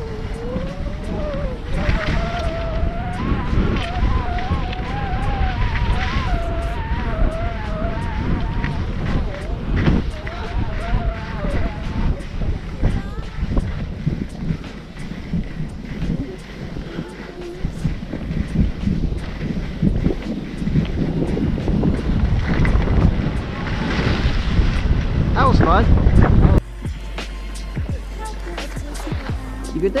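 Wind on the camera microphone and skis running over snow during a descent, a loud steady low rumble, with a wavering melody riding on top over roughly the first twelve seconds. The rumble cuts off abruptly a few seconds before the end, leaving a quieter steady hum.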